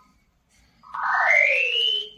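Synthesized audio cue from an equation-sonification program for blind readers, playing the bracket as a finger passes over it: after a short silence, a tone about a second in splits into two slides, one rising and one falling in pitch, tracing the curve of the bracket.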